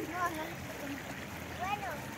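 Shallow river running steadily over stones, with short faint high-pitched voices at the start and near the end.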